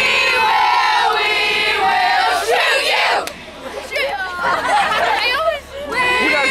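A group of teenage girls chanting and yelling together as a team, with high rising yells about halfway through and again near the end.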